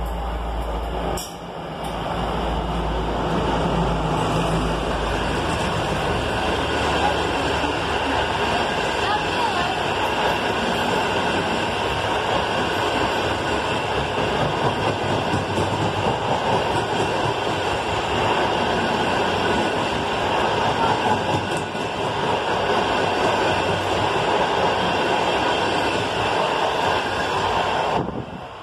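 Passenger train hauled by a CKD diesel-electric locomotive passing. A deep engine rumble fills the first few seconds, then the steady rolling noise of the coaches' wheels on the rails, which cuts off near the end.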